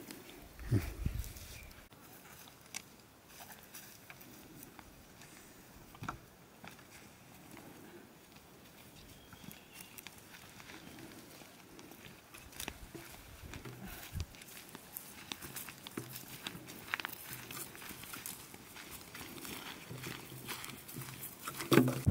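Faint, scattered rustles and light clicks: greens being picked and handled, and footsteps on a dry dirt path.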